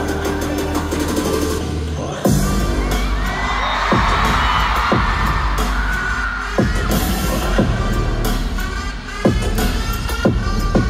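Loud live concert music heard from the audience: a heavy bass beat kicks in suddenly about two seconds in, with repeated falling pitch drops, over a crowd cheering and screaming.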